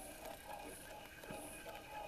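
Medela Pump In Style electric breast pump just switched on and running faintly, its air cycling as soft pulses of hiss about every three quarters of a second.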